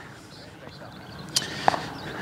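Faint outdoor court ambience, then two short pops about a third of a second apart a little past halfway: a tennis ball fed from across the court, struck and then bouncing.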